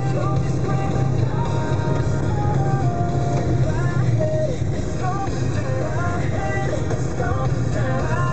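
A car driving, heard from inside the cabin as a steady low drone, with music playing over it: a melody of held notes stepping up and down.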